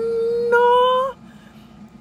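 A woman's voice in one long, drawn-out cry, its pitch rising and then held steady. It grows louder about halfway through and breaks off just after a second in.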